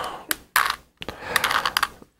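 Plastic layers of a Rubik's Cube clicking and clattering as they are twisted by hand. A few separate clicks come first, then a quicker run of clicks in the second half.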